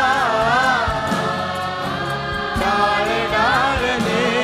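A large choir singing a Gujarati song in unison, with long held, wavering notes, backed by a live band with drums.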